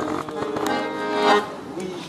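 Piano accordion playing held chords between sung lines, with the notes swelling a little past the middle.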